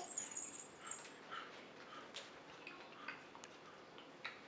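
A baby's striped soft-toy rattle shaken, rattling most busily in the first second, then in a few sparse clicks, with a few short, faint infant sounds in between.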